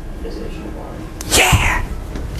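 A man sneezes once, a short, sharp burst about one and a half seconds in.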